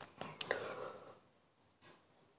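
A speaker's faint breath with a couple of soft mouth clicks in the first second, then near silence.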